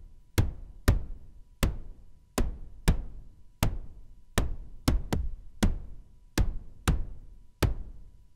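Modular-synth noise percussion: colored noise from an SSF Quantum Rainbow 2 struck through a Make Noise LxD low pass gate, giving drum-machine-like kick and snare hits. About a dozen hits in an uneven repeating rhythm, each a sharp strike whose tail turns duller as it dies away.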